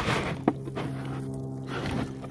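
Split plastic water jug being handled on a wet tabletop, with a short knock about half a second in. A steady low hum is held underneath.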